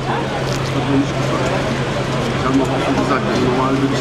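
Street-side ambience: faint background voices over a steady low hum and traffic noise.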